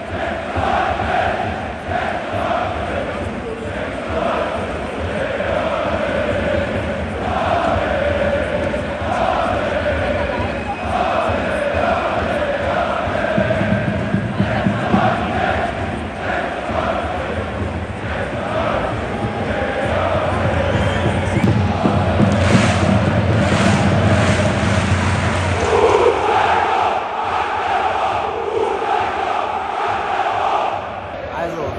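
A large football stadium crowd chanting and singing together in unison, loud and unbroken, growing louder in the second half.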